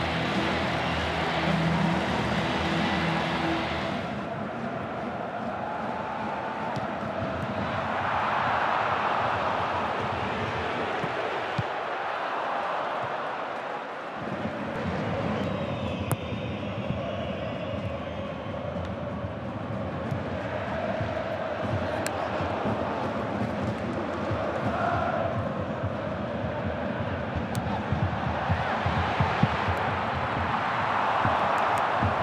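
Football stadium crowd: a large crowd of fans singing and chanting in a steady roar, with a few sharp knocks through it. A music track ends about four seconds in.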